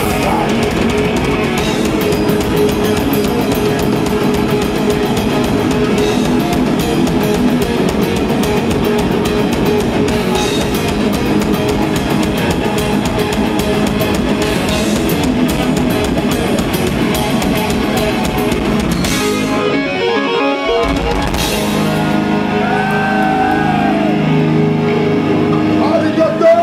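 Melodic death metal band playing live: heavily distorted electric guitars over fast drumming, at a steady loud level. About 19 seconds in the drumming stops and held chords ring on, as the song ends.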